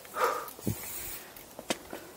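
Mountain bike rolling over a dirt singletrack, with a short scuffing burst near the start, a low knock about halfway through and a sharp click near the end from the bike and its tyres.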